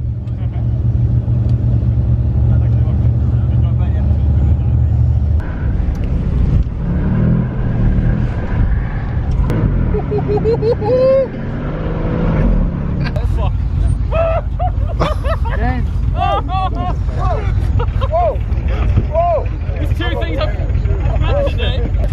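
A car engine running with a deep steady drone that cuts off abruptly about five seconds in, followed by quieter low vehicle rumble; from about the middle onward, people's voices call out over it.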